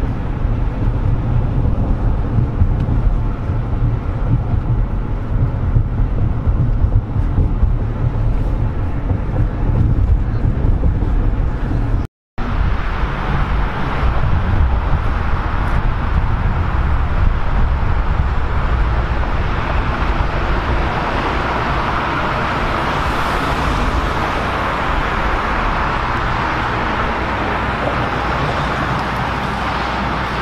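Car interior road and engine noise while driving, a steady low rumble. After a cut about twelve seconds in, roadside traffic noise at an intersection, with the noise of passing cars swelling in the middle of the second half.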